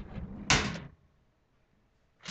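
A short scraping, rustling handling sound in the first second, loudest about half a second in, as objects are moved about.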